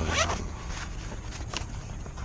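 Hook-and-loop (Velcro) fastener on a fabric knife pouch pulled open: a short rasping rip right at the start, and a second brief rip about a second and a half in.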